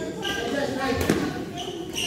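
Voices talking in a large sports hall, with a couple of thuds. The loudest, deepest thud comes about a second in.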